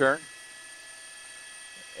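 A spoken word ends right at the start, then a faint, steady hiss with a few thin, steady tones in it, until speech resumes at the very end.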